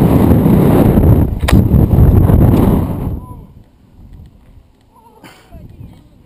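Wind buffeting the microphone of a body-worn action camera as a rope jumper swings on the rope, with a sharp knock about a second and a half in. The rush dies away about three seconds in, leaving faint distant voices.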